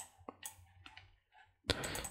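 A few sparse, quiet clicks of a computer mouse, with a louder click shortly before the end.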